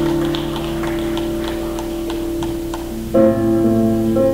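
Live band music: a slow, held chord with faint regular ticking over it, and a new, louder chord struck near the end.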